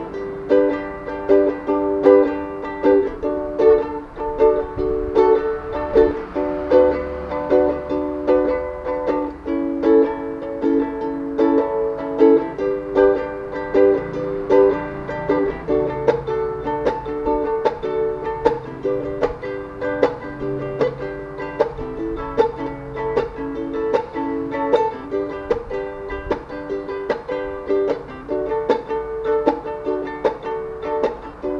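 Ukulele strummed in a steady rhythm, cycling through the chords D, Bm, A and G, with no singing.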